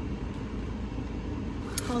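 Steady low rumble of an idling car, heard from inside the cabin.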